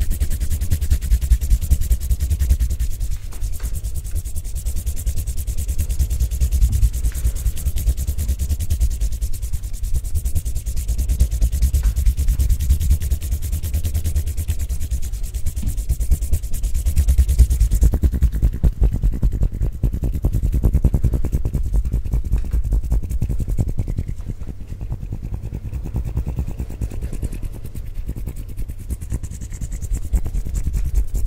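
Bare hands rubbing and pressing together close against a Blue Yeti microphone: a continuous dry rub with a heavy low rumble from the closeness to the mic. The brighter hiss of the rubbing drops away a little past halfway.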